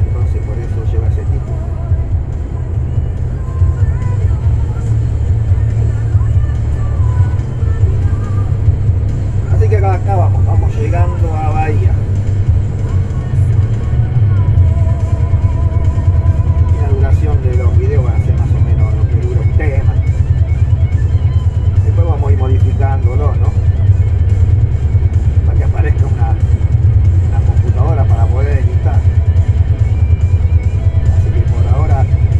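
Steady low engine and road rumble inside a truck cab at highway speed, with music with a singing voice playing over it.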